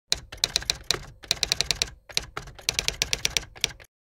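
Typewriter typing sound effect: rapid, irregular key strikes in a few runs with short pauses between them, stopping abruptly near the end.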